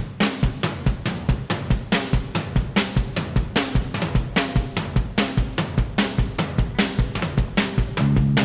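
Live rock band opening a song: the drum kit keeps a steady beat of about four hits a second on bass drum and snare, with electric guitars and bass guitar playing underneath.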